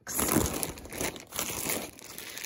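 Clear plastic bags crinkling irregularly as a hand rummages through them in a box.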